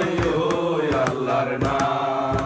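A group of men singing a Bengali devotional folk invocation song (bandana) in unison, with held sung notes over a struck percussion beat about twice a second.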